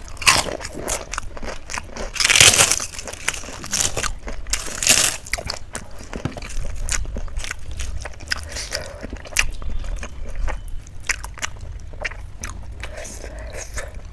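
Close-up eating sounds: crunchy bites and chewing, loudest around two and a half seconds in and again near five seconds. After that come lighter wet clicks of chewing while rice and dal are mixed by hand.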